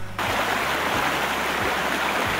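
A waterfall rushing: a steady, even roar of water pouring over cascades. It starts suddenly just after the start.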